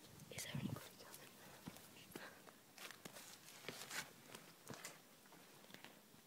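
Faint scattered footsteps, scuffs and rustles on grass and a dusty floor, short irregular clicks with no steady sound under them.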